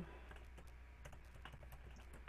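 Faint, irregular keystrokes on a computer keyboard as words are typed.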